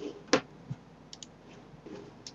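Computer clicks while working at a desk: one sharp click about a third of a second in, then a smaller click and a few faint ticks.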